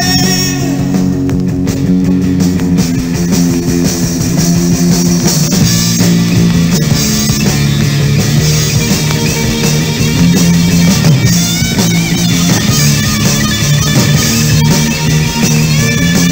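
Rock band playing an instrumental passage, with guitar and drums.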